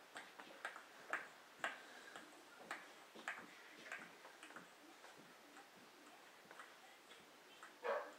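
Faint, irregular light clicks and taps of children's feet and plastic dress-up shoes on a hard kitchen floor, with a brief louder sound near the end.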